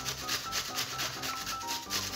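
A peeled onion being grated on a stainless steel box grater: quick rasping strokes, several a second, with soft background music.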